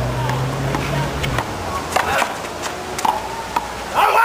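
A small rubber handball slapped by hand and smacking off a concrete wall and court in a string of sharp cracks during a rally. A low hum runs under the first second and a half.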